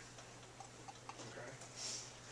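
Quiet room tone with a steady low hum and a few faint ticks, then a man's voice asking "Okay?" near the end.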